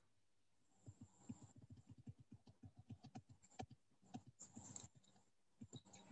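Very faint computer keyboard typing: a quick, irregular run of light key taps, several a second, starting about a second in and stopping shortly before the end.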